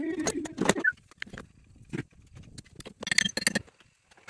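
Steel parts and a spring-loaded metal clamp clinking and clanking as they are handled and fitted against a belt sander held in a vise; the sander is not yet running. A cluster of knocks comes at the start and another about three seconds in.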